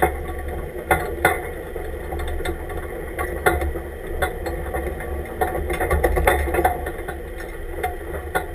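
Off-road truck's engine running at low speed as the truck crawls over sand, with frequent irregular rattles and knocks from the body and cage.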